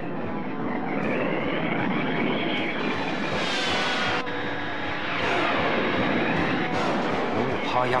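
Cartoon sound effects of a jet-like engine, sweeping up and down in pitch. A rising rush about three seconds in cuts off abruptly about a second later.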